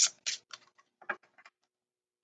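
A few short soft clicks and rustles of paper cards being handled, fading away over the first second and a half, then dead silence.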